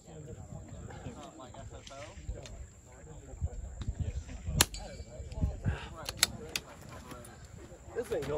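A single shot from a scoped rimfire rifle about four and a half seconds in, a short sharp crack. A few lighter clicks and knocks follow as the rifle is handled on the pipe barricade.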